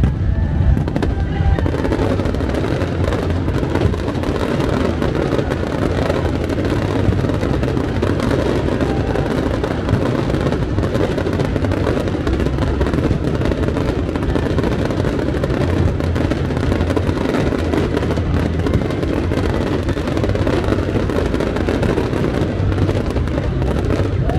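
Aerial fireworks crackling continuously over loud music with a bass that comes and goes.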